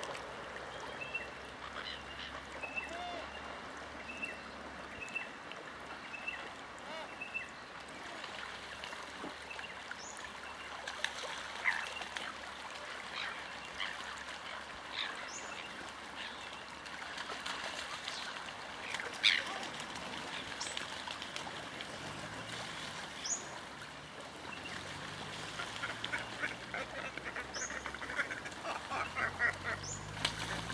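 Waterbirds calling over a steady wash of water: a run of short high calls in the first several seconds, scattered chirps and squawks through the middle, and a busy patter of calls near the end. A low hum that rises in pitch comes in during the last several seconds.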